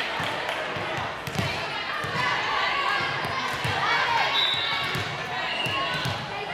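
A volleyball bouncing several times on a hardwood gym floor, each bounce a low thud in the echoing hall. Chatter from players and spectators carries on underneath.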